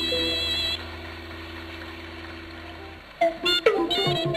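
A song's accompaniment ends on a held chord that fades out. About three seconds in, a new piece of traditional-style music starts with quick, short notes.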